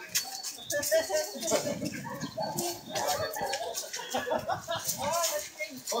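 Overlapping chatter of a small group of people talking at once, no single voice standing out.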